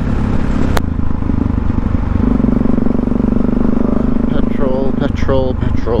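Supermoto motorcycle engine running at a steady cruise, heard from a helmet camera with wind noise; the engine note settles into a strong even hum about two seconds in. A single sharp click comes just under a second in.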